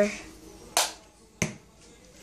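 Two sharp clicks, about six-tenths of a second apart, over a quiet room.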